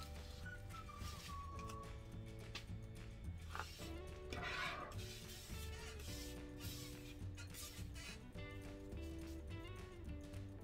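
Background music: held chords that change every second or two over a pulsing bass line.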